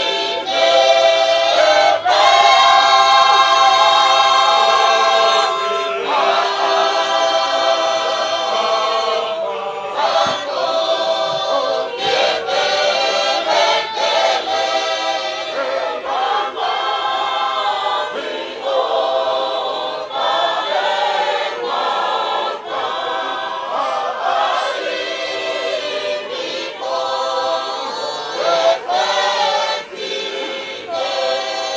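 A large group of men and women singing a hymn together as a choir, in long held notes that move from one chord to the next.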